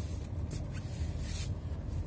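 Steady low rumble of a stationary car idling, heard from inside the cabin, with two short rustling hisses, one about half a second in and a longer one past the middle.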